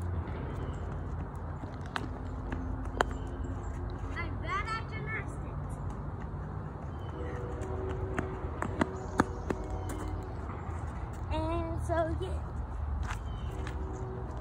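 A child's sneakered footsteps running on a concrete path, heard as a few sharp taps over a steady low outdoor rumble.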